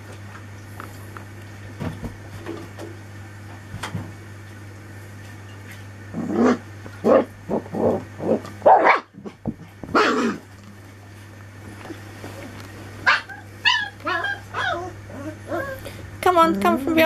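Four-week-old Anglo Wulfdog puppies barking and yipping as they play: a run of about six short barks in the middle, then a quicker string of high yips near the end. A steady low hum sits underneath.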